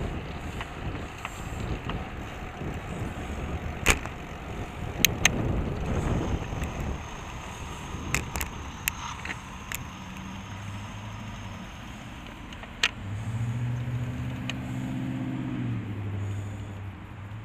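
Riding in traffic on a bicycle: steady tyre and wind rumble broken by several sharp clicks and knocks. In the second half, and most strongly near the end, a car engine runs alongside with a steady low hum.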